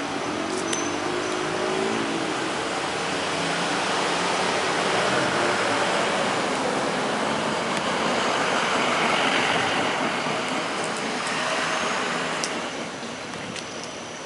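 A road vehicle driving past, its noise swelling over several seconds and fading near the end.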